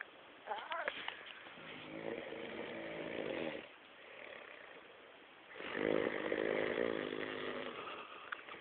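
A man passed out drunk, snoring: two long, rattling snores of about two seconds each, with a quiet breath between them.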